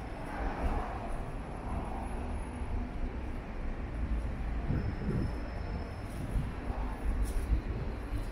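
City street traffic: cars and vans driving past on the road beside the pavement, a steady low rumble of engines and tyres, with one vehicle passing more loudly in the first couple of seconds.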